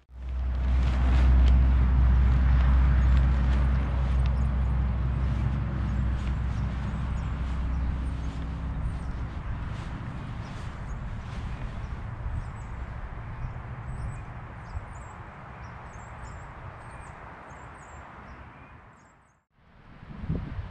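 Wind gusting through the bare forest and buffeting the microphone: a rushing hiss over a heavy low rumble, strongest about two seconds in and slowly easing off, with light rustling of branches and leaves.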